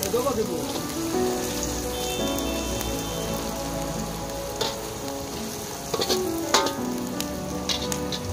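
Sliced onions frying in hot oil in an iron kadai, a steady sizzle. A perforated metal spoon knocks and scrapes against the pan a few times in the second half, loudest a little after six seconds in.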